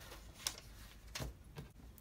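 A few light clicks and paper rustles as a paper instruction sheet is handled and laid down on a wooden table, with the loudest click about half a second in.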